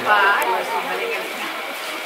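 Indistinct chatter from a room full of people, with a short higher-pitched voice heard just at the start.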